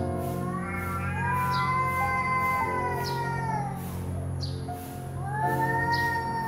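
Domestic cats yowling in a territorial standoff. One long, wavering yowl sinks away after about three seconds, then another starts near the end and rises. Soft ambient music plays underneath.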